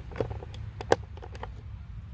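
Two sharp clicks, a small one just after the start and a louder one about a second in, over a low steady rumble.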